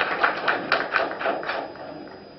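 Camera shutters firing in rapid bursts, a fast even train of clicks about six a second that thins out and fades near the end.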